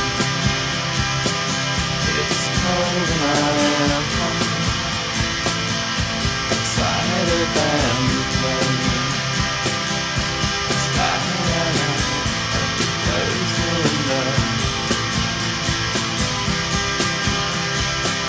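Indie rock song playing: electric guitars over a steady drum beat, with gliding guitar lines.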